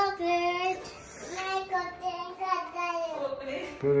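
A young child's high voice singing drawn-out, wordless notes in a sing-song run, with short breaks between phrases.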